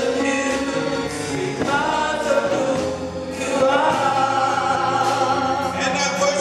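Gospel choir singing in long, held phrases.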